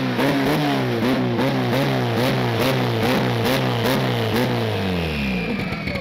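Turbocharged drag-racing Chevette engine idling with an uneven pulse about three times a second, then sagging in pitch and cutting off a little after five seconds in. A faint high turbo whine keeps falling away as the turbocharger spins down.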